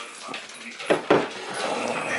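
A small dog giving two short, sharp barks in quick succession about a second in.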